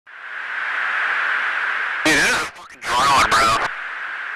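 Steady hiss of a fighter jet's cockpit intercom and radio channel, with a crew member's voice coming through briefly twice in the second half.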